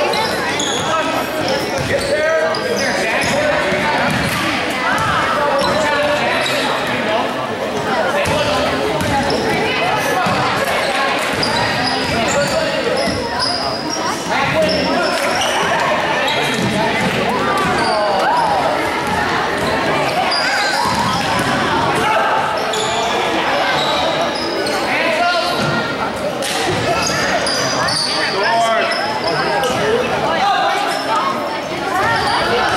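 Basketball game sound in a gym: a basketball dribbled on a hardwood floor and sneakers squeaking, under steady overlapping voices of players and spectators calling out, echoing in the large hall.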